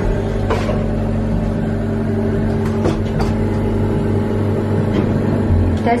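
Steady electrical hum inside a lift car, with a few light clicks.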